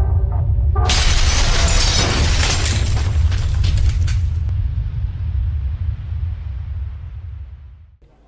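Intro sound effects: a deep, steady rumble with a loud shattering crash about a second in that cuts off after a few seconds, the rumble then fading out near the end.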